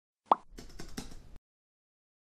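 Intro-animation sound effects: a single sharp plop as a search box pops up, then about a second of rapid keyboard-typing clicks as a web address is typed in.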